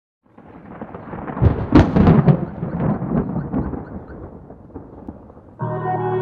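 Opening of a K-pop track: a crackling, rumbling noise effect swells up, is loudest about a second and a half to two and a half seconds in, and dies away; near the end a sustained synthesizer chord comes in.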